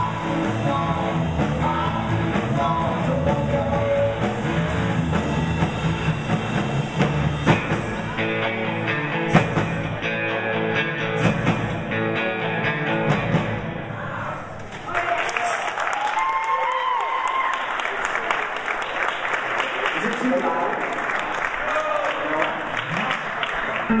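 Live rock band with electric guitars and drums playing the last bars of a song, stopping a little past halfway. An audience then applauds.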